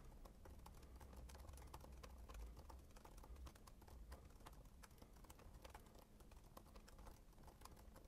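Faint, quick, irregular keystrokes on a computer keyboard as lines of code are typed.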